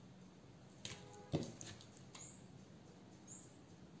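Faint wet handling sounds of raw, olive-oil-coated steak being lifted and turned on a wooden cutting board: a few soft squishes and a brief squeak about a second in.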